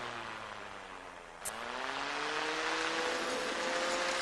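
Electric car radiator fan motor: a falling whine fades at the start, then a sharp click about a second and a half in, after which the motor spins up with a whine that rises in pitch and levels off.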